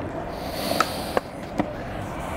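Skateboard flipped with the front foot, its deck and wheels knocking lightly on asphalt three times in the second half, over steady outdoor background noise.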